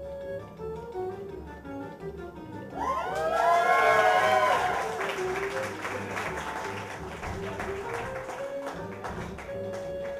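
Guitar-led music plays throughout. About three seconds in, an audience breaks into cheers and whoops, then claps for several seconds over the music.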